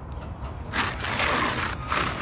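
A loose asphalt shingle being handled and slid over other shingles: a gritty scraping that starts a little under a second in and keeps going.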